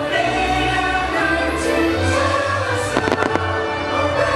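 Fireworks show soundtrack: music with singing plays throughout, and about three seconds in a quick cluster of firework bangs cracks over it.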